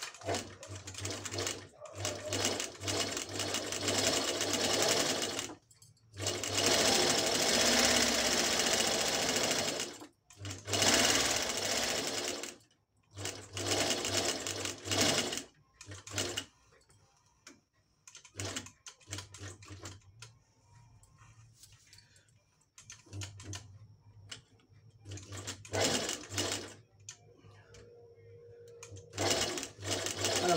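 Singer 18-22 cylinder-arm sewing machine, freshly oiled and overhauled, stitching through a belt in runs of several seconds with short stops between them. The runs are long and loud for the first half, then shorter and fainter, with a few brief bursts near the end.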